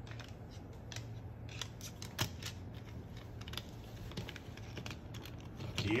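Moluccan cockatoo's claws clicking irregularly on a hardwood floor as it walks, a few light clicks a second, with a beak tapping on a plastic toy near the end.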